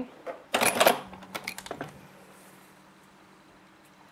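A short, loud burst of rustling and clattering about half a second in, as stitched fabric is handled and drawn away from a stopped sewing machine, followed by a few light clicks.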